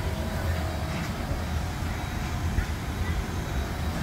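Steady low background rumble with no distinct sound events.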